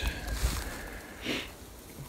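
Soft rustling of dry grass and brush as someone walks through it, in a couple of swells about half a second and just over a second in, over a low rumble of wind and handling on the microphone.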